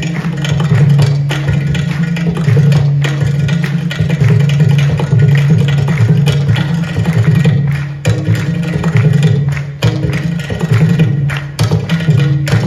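A Carnatic percussion ensemble of mridangam, clay-pot ghatam and morsing (mouth harp) playing a fast rhythmic passage together. A twanging low drone runs under dense drum and pot strokes, heard through the festival's loudspeakers.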